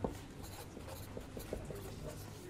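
Quiet scratching of writing, with a single sharp knock right at the start.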